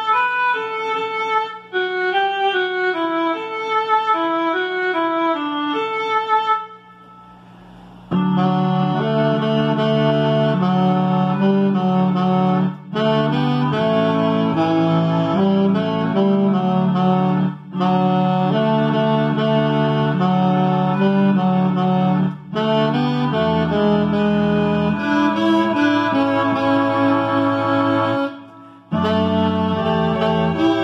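Alto saxophone playing the tenor line of a hymn over a recorded accompaniment. For the first six seconds the accompaniment plays alone. After a short pause the saxophone and the accompaniment play the hymn together in phrases, with a brief break between each.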